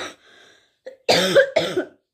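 A woman coughing into her fist: a short cough at the start, then two hard coughs in quick succession about a second in.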